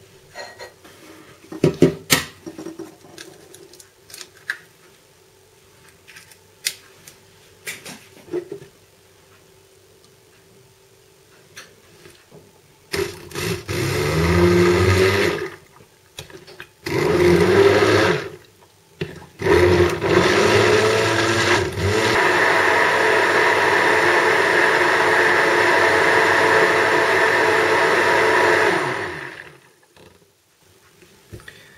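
Immersion hand blender running in a plastic jug, blending cream, eggs, cheese and cornflour into a smooth cheesecake batter: three short bursts a second or so apart, then a steady run of about seven seconds that stops just before the end. Before the blender starts there are scattered light knocks and clicks.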